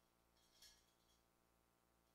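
Near silence, with one faint, brief high-pitched hiss about half a second in.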